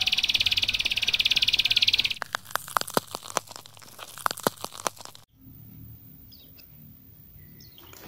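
Intro sound effects: a rapid high buzzing trill for about two seconds, then about three seconds of electric crackling with sharp cracks. Faint room noise follows.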